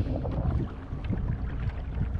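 Steady low rumble of wind buffeting the microphone, with a few faint small knocks.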